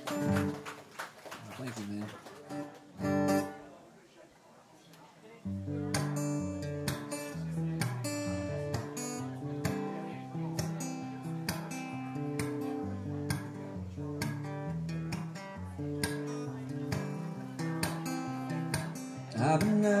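Steel-string dreadnought acoustic guitar played solo: a few loose notes and a short pause, then about five seconds in a steady picked and strummed intro to a song. A man's singing voice comes in at the very end.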